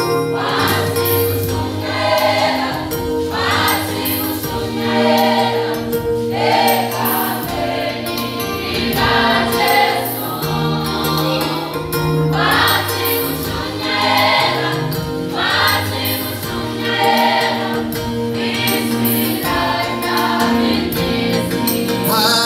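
A choir singing a gospel song in several-part harmony, with hand clapping.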